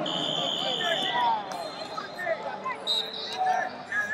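Rubber-soled wrestling shoes squeaking in many short chirps on the vinyl mat as the wrestlers scramble. A long, steady, high whistle sounds near the start, and a shorter one about three seconds in.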